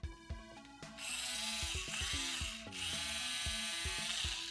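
Toy dentist drill whirring as it bores into a Play-Doh tooth. It runs in two stretches, starting about a second in, with a short break a little past the middle.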